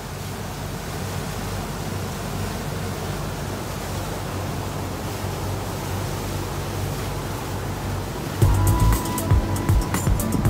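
Motorboat under way: a steady engine drone with rushing water and wind noise. About eight seconds in, background music with a beat comes in over it.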